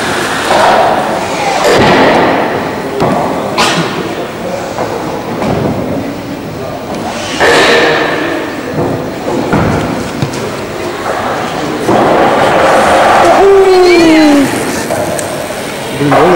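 Indistinct voices with occasional sharp knocks and thuds, all echoing in a large, hard-walled hall. The electric bike's hub motor itself is not heard.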